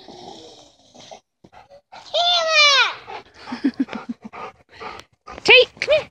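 Dog vocalising during play: one long high call that falls in pitch about two seconds in, then a few short, sharp calls near the end.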